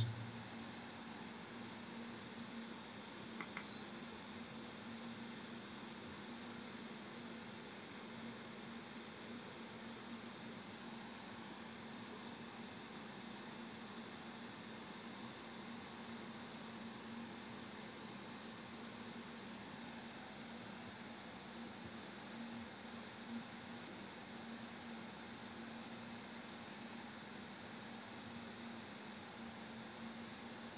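Faint, steady whir of a cooling fan on an electronic DC load running under load, with a low steady hum. A small click about three and a half seconds in.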